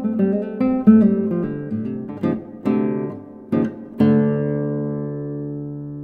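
Stephan Connor nylon-string classical guitar played fingerstyle: a bluesy run of plucked notes and chords. About four seconds in comes a closing chord, left ringing and slowly fading away.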